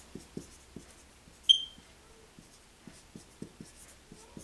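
Dry-erase marker writing on a whiteboard: a string of faint short strokes and taps. About one and a half seconds in there is a single short, high-pitched electronic beep, the loudest sound, which fades quickly.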